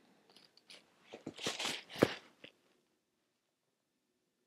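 A man drinking from a brown leather-covered flask: a few quiet, short swallowing and mouth sounds, the loudest about two seconds in.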